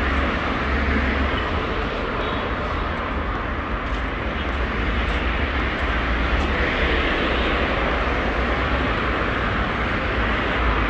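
Steady city street noise: a continuous low rumble with a hiss of passing traffic, no single event standing out.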